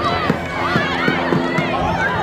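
Field hockey players shouting and calling out to each other in high voices, many overlapping, over a steady low hum.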